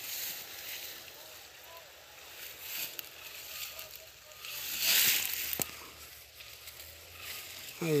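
Dry grass and straw rustling as a boa constrictor is let go into it and crawls off, with one louder swell of rustling about five seconds in and a sharp click just after.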